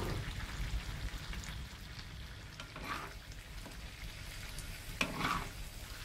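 Stir-fried luffa, egg and squid sizzling in a pan, stirred with a few brief scrapes of the utensil through the food, about every two to three seconds.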